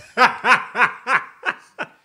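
A woman laughing: a run of about six short pulses of laughter that grow shorter and fainter toward the end.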